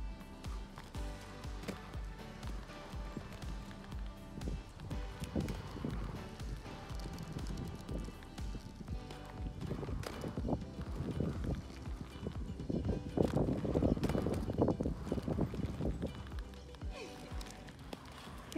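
Instrumental background music with a steady beat, louder in the second half.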